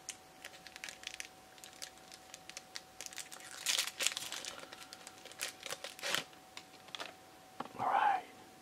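Pokémon trading cards being handled, with intermittent crinkling and rustling in short bursts and light clicks between.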